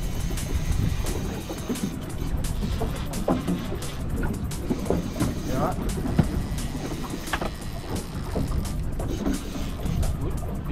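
Steady low rumble of wind and water around an open boat at sea, with background music over it.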